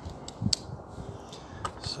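Handling noise from a diecast model car being picked up and held on a table: one sharp click about half a second in, then a few fainter clicks and taps near the end.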